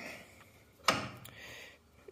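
A single sharp click about a second in, with a short ring after it, as a hand knocks against the lathe's motor mount and belt guard.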